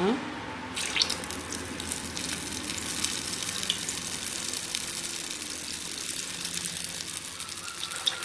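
Susiyam balls coated in idli batter deep-frying in hot oil in a steel kadai: a steady sizzle that starts about a second in, as the first ball goes into the oil.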